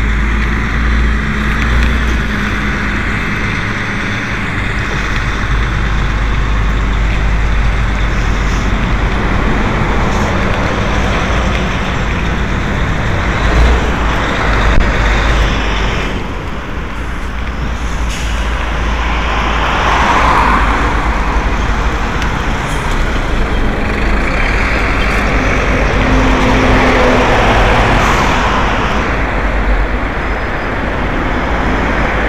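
Continuous rumble of a vehicle travelling over a rough, potholed gravel road, with heavy low wind buffeting on the microphone. In the second half, motor vehicles pass on a paved road, each rising and falling in a broad swell.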